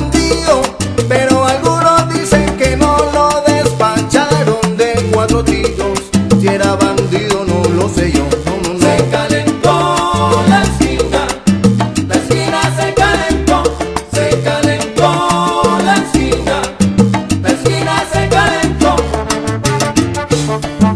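Salsa band playing an instrumental passage with no singing: a stepping bass line under dense percussion and short repeated melodic figures.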